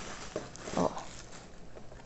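Thin clear plastic wrapping crinkling and rustling in irregular little crackles as a wire whisk attachment is pulled out of it by hand.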